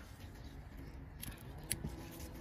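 A few faint, short clicks of metal tweezers handled among succulent leaves, a little past a second in, over low steady background noise.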